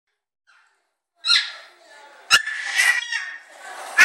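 Baby vocalizing in short, pitched calls, starting after about a second of quiet, with one sharp knock a little past halfway.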